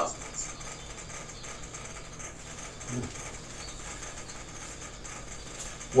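Quiet room tone with a faint steady low hum, and a brief soft murmur from a man's voice about three seconds in.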